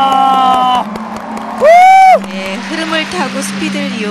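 Spectators cheering a landed triple-triple jump: a long held shout at the start, then one loud rising-and-falling whoop about two seconds in, with clapping.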